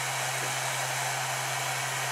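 Hot air gun running steadily: an even rush of blown air over a low steady hum.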